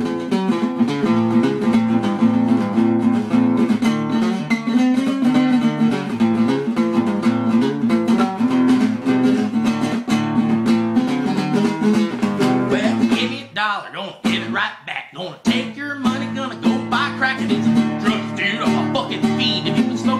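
Instrumental break of a song: acoustic guitar strumming steady chords. The playing thins out and drops in level for about two seconds roughly two-thirds of the way through, then the strumming picks back up.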